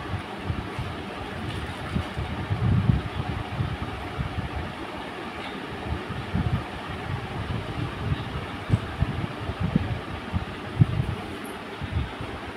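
Steady whoosh of a room fan running, its airflow buffeting the phone microphone in irregular low rumbles.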